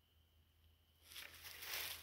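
Near silence for about a second, then a rustling, scraping noise of someone moving through brush and undergrowth, growing louder toward the end.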